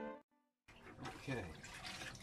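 Cello music cuts off a moment in. After a brief silence, water sloshes in a mop bucket as a mop is worked in it.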